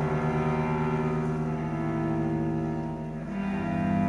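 Bowed cello holding a long low note; about three seconds in the line moves on to new notes, and the piano joins near the end.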